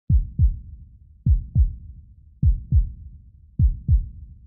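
Heartbeat-like bass beat opening a song's backing track: deep thumps in pairs, each dropping in pitch, four pairs about 1.2 seconds apart.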